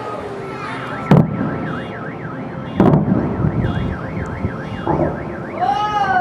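Two loud firework bursts, the first about a second in and the second just before three seconds, over a warbling alarm-like tone that rises and falls about three times a second. Voices come in near the end.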